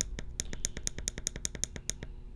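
A fast, even run of faint clicks, about ten a second, over a low steady hum.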